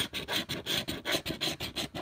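A coin scratching the coating off a paper scratch-off lottery ticket in quick back-and-forth strokes, about six a second.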